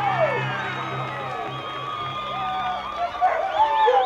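Field hockey players shrieking and cheering together in high voices as they celebrate a winning goal, with background music.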